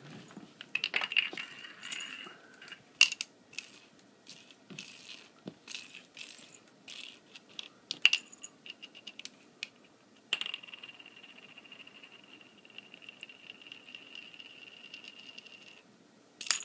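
Plastic bottle cap clattering and skittering on a hardwood floor as a kitten bats at it: a scatter of sharp clicks and taps, then, about ten seconds in, a continuous fast rattle lasting some five seconds.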